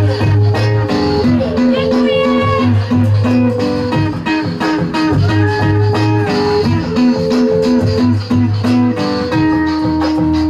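Live band music: guitar-like plucked notes over a repeating low bass figure, in a steady rhythm.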